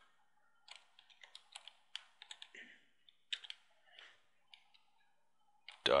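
Computer keyboard being typed on: a quick, uneven run of faint keystrokes as a short word is typed out, then a pause.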